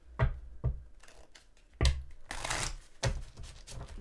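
Tarot cards being shuffled and handled, with a brief swish of sliding cards in the middle. Four sharp knocks, the two loudest about a second in and just before two seconds in.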